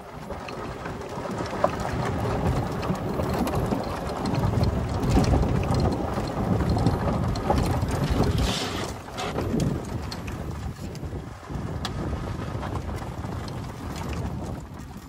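Golf cart driving along a rough dirt track: wind buffeting the microphone over a low rumble, with scattered knocks and rattles from the cart.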